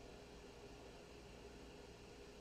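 Near silence: room tone, a faint steady hiss with a faint steady hum.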